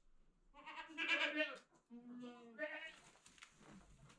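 Goats bleating: a long wavering bleat about half a second in, followed by a lower bleat and then a shorter higher one.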